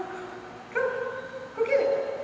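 A dog whining in a few drawn-out, steady-pitched notes, one after another with short gaps, the last one the loudest.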